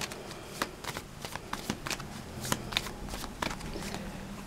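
A deck of tarot cards being shuffled by hand, a quick, irregular run of short card flicks and slaps.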